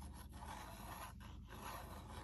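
Faint scraping and rubbing of a fine-tip glue bottle's nozzle drawn along a card-stock tab as a line of glue is laid down.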